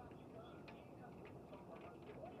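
Near silence: a faint background with soft, irregular ticks and a few short, faint chirps.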